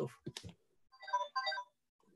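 Phone ringtone playing a short melody: two brief bursts of notes about a second in.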